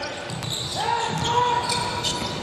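Basketball being dribbled on a hardwood court in a large, echoing hall. A long held shout comes in just under a second in and lasts to the end.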